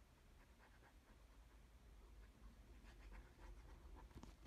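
Near silence, with faint scattered rustles and light scratches of paper and card being handled and glued.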